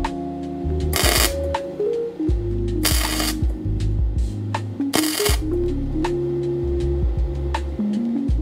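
Background music, broken by three short bursts of crackling from a CONENTOOL MIG-200 flux-core MIG welder's arc, about a second in, at three seconds and at five seconds, each about half a second long: tack welds on 1 mm sheet steel.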